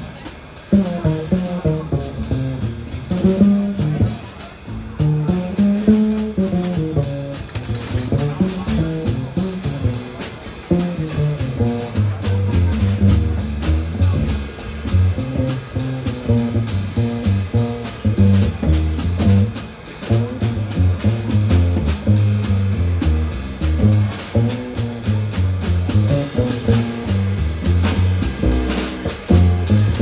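Live small-group jazz with an upright bass, a drum kit and a stage piano. The plucked upright bass carries melodic lines over light cymbal time, then drops into a lower, stepping walking-bass line about twelve seconds in.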